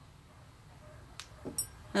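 Quiet room tone with a faint click about a second in and another soft tick near the end, from hands working yarn with a crochet hook.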